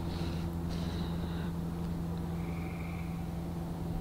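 A steady low mechanical hum with a constant pitch, with a faint, brief high tone a little past halfway.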